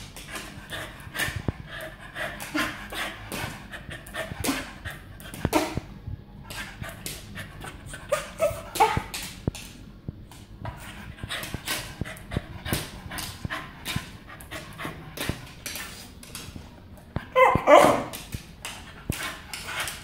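Small dog panting while its claws click and tap on a hardwood floor as it hops about begging for a treat. Short whines break in about halfway, and a louder one comes near the end.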